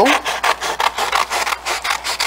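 Scissors cutting through a sheet of black paper in a quick run of crisp snips, about five a second.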